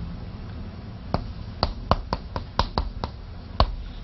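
Chalk tapping against a blackboard as Chinese characters are written stroke by stroke: about nine short, sharp taps, irregularly spaced, starting about a second in, over a faint low hum.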